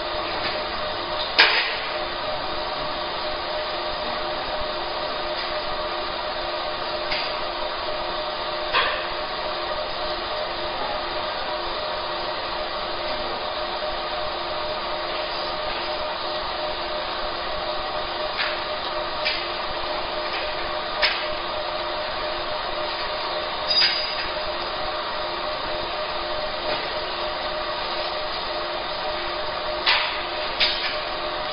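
Fiber laser marking machine running while it marks colour onto stainless steel: a steady hum with a few short sharp clicks scattered through it.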